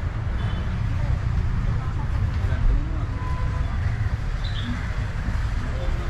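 A steady low rumble with faint voices.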